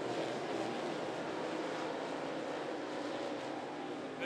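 Several dirt limited late model race cars running together at speed through the turns, their engine noise blending into one steady roar.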